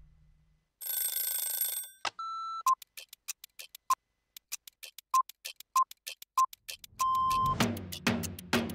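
Sound-effect sequence for an animated clock: a short shimmering whoosh, a beep, then a run of rapid, sharp clock ticks with short beeps among them, ending in a longer beep. Music comes back in near the end.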